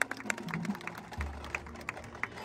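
Marching band percussion playing softly: scattered, irregular clicks and taps, with a low held tone coming in just over a second in.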